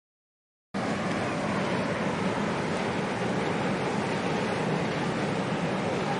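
Silent for most of the first second, then a steady rushing noise of wind and harbour water with no distinct events.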